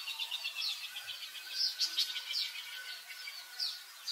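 Small birds chirping: rapid high chirps, many as short falling notes, coming several times a second and loudest about two seconds in.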